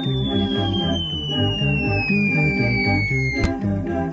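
Cartoon background music with a steady beat, and over it one high whistle-like tone that slides slowly downward. The tone cuts off with a sharp click a little before the end.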